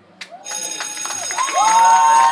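Audience starting to clap and cheer, the applause building from about half a second in, with long high cheers rising over it in the second half.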